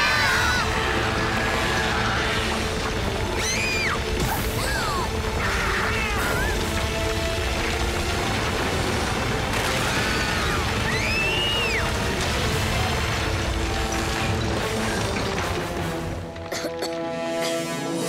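Cartoon sound effects of the ground caving in: continuous heavy rumbling and crashing under dramatic background music, with a few short yelps from the characters. The rumble dies away about two seconds before the end.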